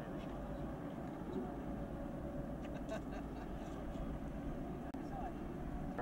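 Four Wright R-1820 Cyclone radial engines of a B-17G Flying Fortress running at low power as it taxis, a steady low drone.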